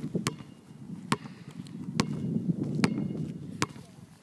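Basketball dribbled on an outdoor asphalt court: five sharp, evenly spaced bounces, a little more than one a second.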